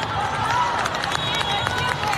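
Busy volleyball tournament hall during play: sneakers squeaking on the sport court and scattered sharp ball-contact smacks over a steady hubbub of crowd voices.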